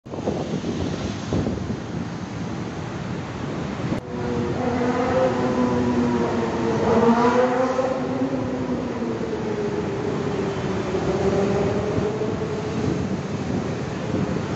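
Steady rumble of vehicle noise. About four seconds in, a droning engine-like hum comes in, swells a little past the middle and then eases off.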